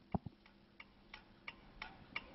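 Faint, evenly spaced ticks, about three a second, after a single low thump just at the start: the quiet opening of the hip-hop backing beat coming in.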